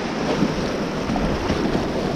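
Steady rush of shallow whitewater in a low-water river rapid, with water splashing against the plastic kayak's bow as it runs through the waves, and a low rumble of wind on the microphone.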